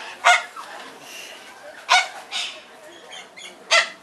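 A corella squawking: three loud, short, harsh calls spaced about a second and a half to two seconds apart, with a softer one after the second.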